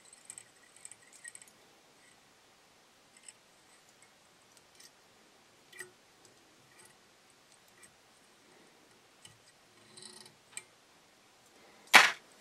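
Faint, scattered small clicks and ticks of a whip finish tool and thread being wrapped around the head of a fly tied in a vise, with a sharper click right at the end.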